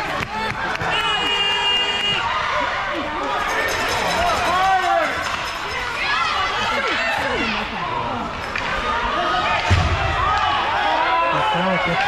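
Ice hockey arena din: many voices of spectators and players talking and calling out over each other. A short steady whistle sounds about a second in, and a single loud thud comes near the end.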